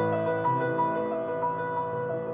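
Solo grand piano playing a gentle passage: a high note struck again and again over held low chords.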